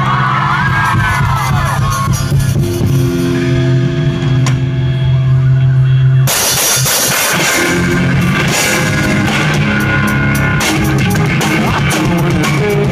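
Rock band playing live on a festival PA: electric guitars and bass hold ringing chords for about six seconds, then the drums and full band come in together.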